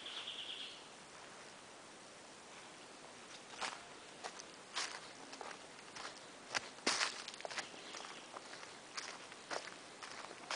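Footsteps on a forest trail of dry leaf litter and twigs, irregular crunching steps that start a few seconds in, the loudest about seven seconds in. A brief high trill sounds at the very start.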